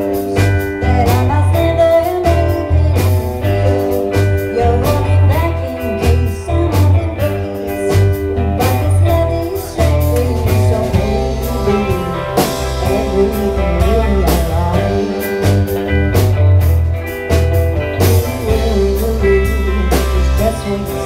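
A rock band playing live: two electric guitars, bass guitar and drums, with steady drum hits over a strong bass line.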